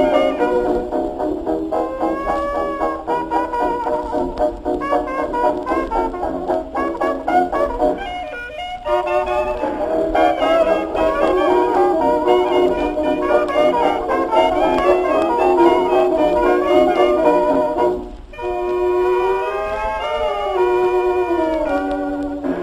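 1920s hot jazz band of cornet, clarinet, tenor saxophone, banjo, piano, tuba and drums playing together, with the thin sound of an early record and little bass or treble. The ensemble breaks off briefly twice, and near the end one horn holds long notes that slide in pitch.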